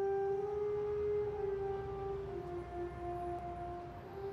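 Slow song intro of long held electronic notes: one steady tone drops a step in pitch a little past halfway, over a low rumble.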